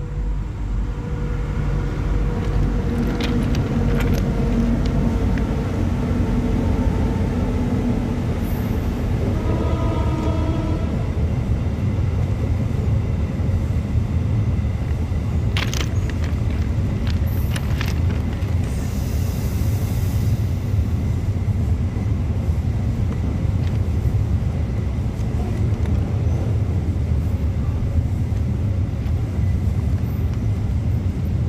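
An empty coal train hauled by CC 202 diesel locomotives passing, a steady low rumble of engines and wagons. A brief higher tone sounds about ten seconds in.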